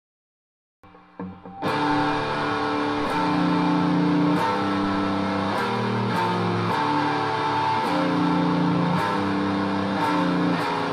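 Schecter V1 Apocalypse electric guitar, with its Apocalypse-VI humbuckers, played through an EVH 5150III amp on its lead channel, a distorted high-gain tone. After a moment of silence come a few quiet notes, then from under two seconds in a loud riff of held notes, each lasting about half a second to a second.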